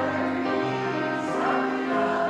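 A congregation singing a hymn together, a massed choir of voices moving through steady held notes.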